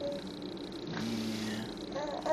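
A low, steady hummed 'mmm' lasting under a second, about halfway through, during spoon-feeding. A brief higher vocal note comes right at the start, over quiet room sound.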